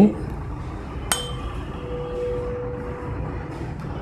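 Tuning fork struck with a rubber hammer about a second in: a sharp metallic clink, then a steady pure hum that slowly fades. The fork is held over the mouth of a resonance tube, testing the air column for resonance.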